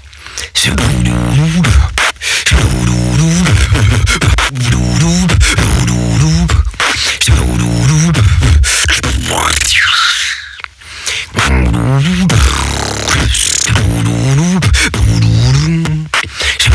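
Vocal beatboxing: a hummed bass line gliding up and down about once a second, under sharp kick and snare sounds made with the mouth. About ten seconds in comes a rising high sweep, then a short break before the beat picks up again.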